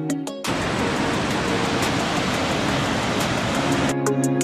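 Water pouring over a low river weir: a steady, even rush of white water. Guitar music cuts off about half a second in and comes back at the very end.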